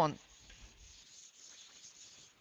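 Whiteboard eraser wiping marker writing off a flip-chart board: a faint, steady scrubbing hiss.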